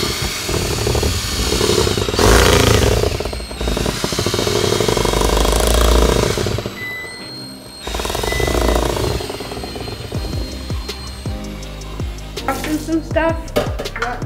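A cordless drill running a whisk attachment through chocolate cake batter in a bowl, the motor whirring as the whisk churns the batter. It stops briefly about seven seconds in, runs again, and stops about eleven seconds in.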